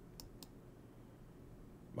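Two faint clicks of a computer mouse, about a quarter of a second apart, near the start.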